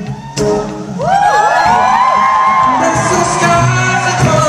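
Live acoustic guitar and male singing, with several audience voices whooping in overlapping rising-and-falling glides from about a second in.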